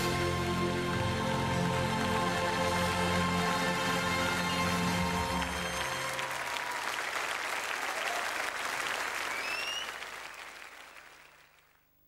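Closing music with held chords that ends about halfway through, leaving studio audience applause with a couple of rising whistles; the applause then fades out over the last two seconds.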